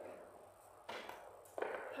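Two soft knocks about two-thirds of a second apart, after a near-quiet moment in a large room.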